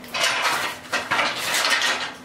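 Deer antlers clattering and scraping against each other as they are gathered up, in two spells of about a second each.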